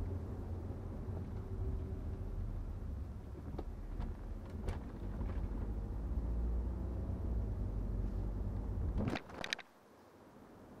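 A BMW 520d F10 with its four-cylinder diesel on the move: a steady low rumble of engine and road noise with a few faint clicks. Near the end comes a short burst of sharp clicks, and the rumble then cuts out suddenly.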